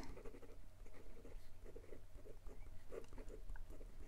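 Faint, irregular scratching of a fountain pen's black steel Long Knife architect nib moving across notebook paper as it writes with the nib turned upside down (reverse writing), which makes it a little bit scratchier.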